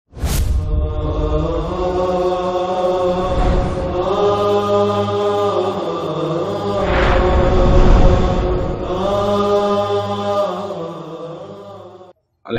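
Intro music of long, held chanted vocal notes that shift every few seconds, with a sharp whoosh-like hit just after the start and a swelling whoosh around seven seconds in, fading out near the end.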